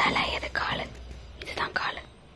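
Whispered speech: a person whispering a few short, breathy phrases, then falling quiet near the end.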